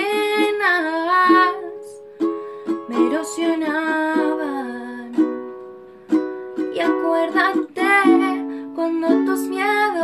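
Ukulele strummed in chords in a small room, with the chord left to ring out and fade twice. A voice holds long wavering notes over the strumming.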